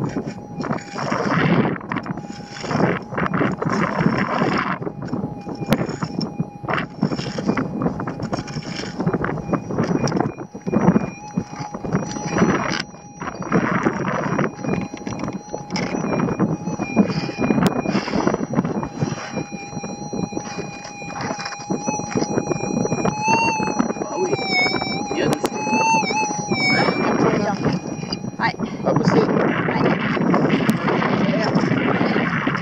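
Repeated strokes of a prospecting pick digging and scraping into dry, loose red soil. Under them runs the steady tone of a Minelab SDC 2300 gold detector; near the end the tone wavers up and down in pitch, then cuts off.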